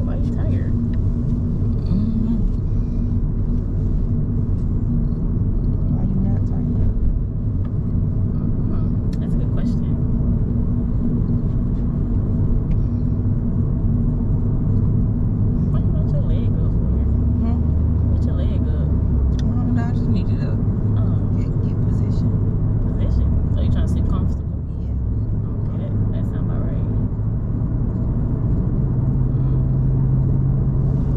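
Road and engine noise inside a moving car's cabin: a steady low rumble, with an engine hum that shifts pitch a few times.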